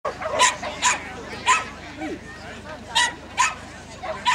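A dog barking sharply five times: three barks in quick succession, a pause of about a second and a half, then two more.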